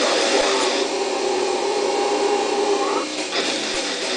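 Distorted electric guitar holding a chord that rings steadily for about two seconds. Busier playing comes before it, and the sound changes again about three seconds in.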